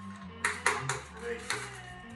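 Brown paper bag crinkling in a few sharp rustles as a beer can is pulled out of it, over steady background music.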